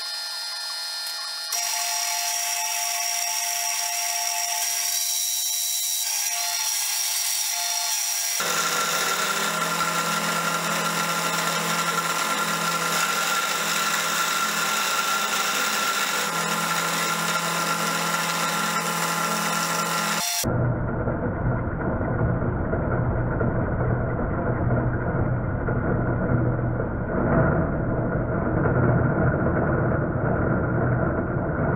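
A vertical milling machine running, its end mill cutting a brass blank held in a machine vice. The steady machine sound changes character abruptly a few times.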